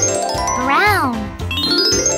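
Children's background music with a twinkling magic-wand sparkle effect: chimes that sweep upward, repeating about every two seconds. About a second in, a loud pitched whoop rises and falls once.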